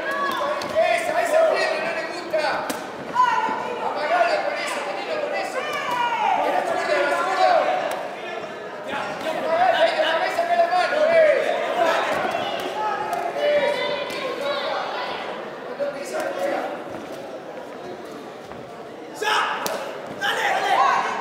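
Kickboxing bout: gloved punches and kicks landing with scattered sharp slaps and thuds, under continuous voices in a large hall.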